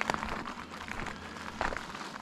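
A few soft, irregular crunches of gravel on a gravel rail-trail surface, over a steady low hum.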